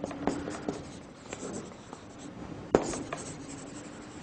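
Marker pen writing on a flip-chart pad in a series of short scratchy strokes, with one sharp click a little after halfway.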